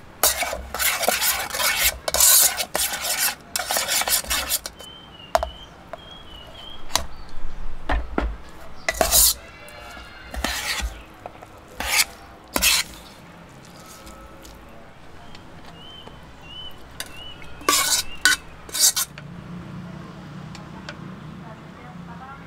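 A metal utensil stirring and scraping in a metal camping pot, mixing seasoning through cooked instant noodles, in irregular bursts of scraping and clinking with single knocks against the pot.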